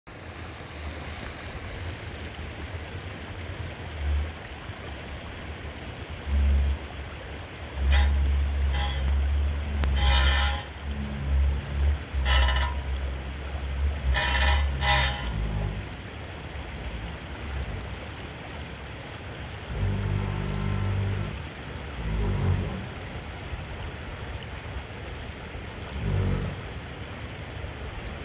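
Shallow creek running over rocks, with the low rumble of a 5th-generation Toyota 4Runner's V6 as it crawls down a steep dirt bank toward the crossing. The rumble swells with several louder bursts between about six and sixteen seconds in.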